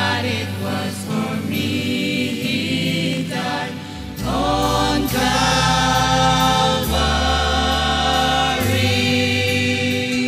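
A small mixed group of young men and women singing a hymn together into handheld microphones, over sustained low bass notes that change a few times.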